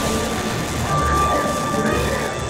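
Space Mountain roller coaster train rushing along its track in the dark, with a low rumble, over the ride's spooky onboard soundtrack and its steady high tone.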